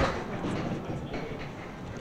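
Candlepin bowling ball rolling down a wooden lane, a steady low rumble, after a sharp knock at the start.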